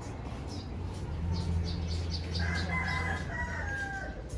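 A rooster crowing once, a long call of about a second and a half that drops in pitch at the end, over a low steady hum.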